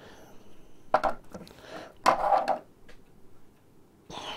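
Handling noise of a radio programming cable and its plastic plug being fiddled with by hand: a sharp knock about a second in, then a louder, longer rubbing clatter about two seconds in.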